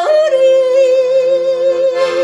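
A woman yodeling in a traditional Bavarian style: a quick flip in pitch right at the start, then one long held note with slight vibrato. A piano accordion plays steady chords underneath.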